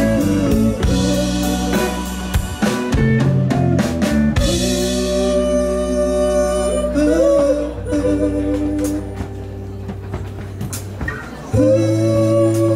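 Live band playing an instrumental passage on electric guitar, bass, drums and keyboard, with drum hits over held chords at first. The band drops to quieter sustained chords past the middle, then comes back in loud near the end.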